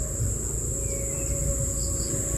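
A steady, high-pitched insect chorus drones without a break, over a low, uneven rumble.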